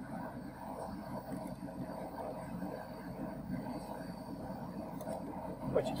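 Propane burner under a moonshine still running steadily, a low even rush of noise with no breaks.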